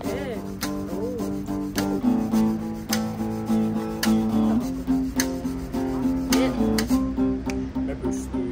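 Acoustic guitar strumming chords, with sharp wooden clicks about once a second from sticks striking a hand-held percussion board.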